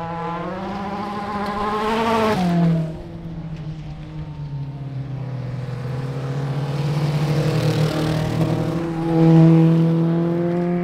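Folkrace hatchback race cars on a dirt track pass one after another with their engines revving hard. The first climbs in pitch and peaks a couple of seconds in, then drops in pitch as it goes by. A second, louder car closes in near the end.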